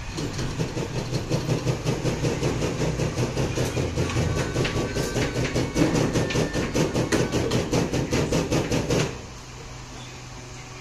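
A machine running with a fast, even clatter of about five or six knocks a second over a low rumble, stopping abruptly about nine seconds in.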